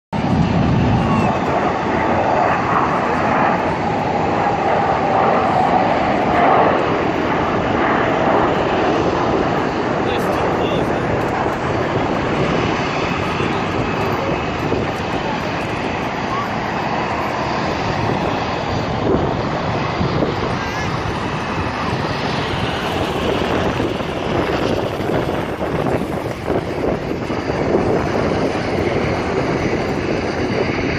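Jet engines of a formation of F/A-18 Hornet display jets flying past, a steady jet noise that is loudest in the first seven seconds or so, with crowd chatter beneath.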